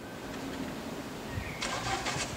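Street ambience fading in: the low rumble of road traffic, with a brief burst of hiss near the end.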